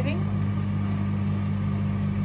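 Microwave oven running, a steady low electrical hum.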